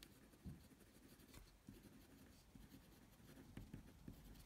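Faint scratching of a felt-tip marker writing on paper, in short irregular strokes.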